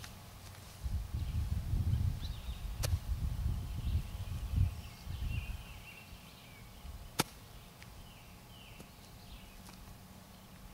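Low gusty rumble of wind on the microphone through the first five seconds, with small birds chirping faintly off and on in the background. Two sharp clicks stand out, one about three seconds in and a louder one about seven seconds in.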